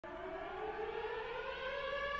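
Air-raid siren winding up: a single tone slowly rising in pitch.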